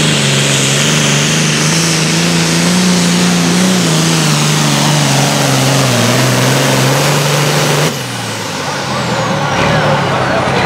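John Deere 6030 Super Farm pulling tractor's turbocharged diesel running flat out under the load of the sled, its pitch wavering slightly. About eight seconds in the engine note cuts off sharply as the pull ends, leaving a high whine that falls in pitch as the turbocharger spins down.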